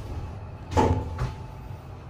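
Lift landing doors, shut stainless-steel panels, giving a sharp metallic clunk with a brief ring about three quarters of a second in, then a lighter knock, over a low steady hum of the lift machinery.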